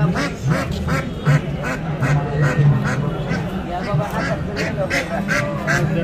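Ducks quacking in a rapid, repeated series, about two to three quacks a second, over the chatter of a crowd.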